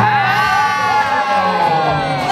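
Spectators shouting a long, drawn-out cheer that holds for nearly two seconds and slowly sags in pitch near the end.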